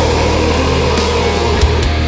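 Death/thrash metal recording: heavily distorted electric guitar and bass hold a low, sustained chord over the drums.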